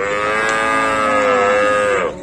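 A cow mooing: one long, loud call held for about two seconds, its pitch falling away at the end.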